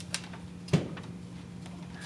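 A folded paper note being unfolded by hand: two short, sharp crackles, the louder one a little under a second in, over a steady low hum.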